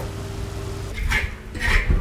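Metal cookware being handled: two or three short scrapes and clinks of a ladle against a wok about a second in, over a low steady rumble.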